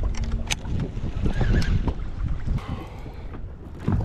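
Wind buffeting the microphone over choppy open water, with waves lapping at the boat and a few light clicks and knocks.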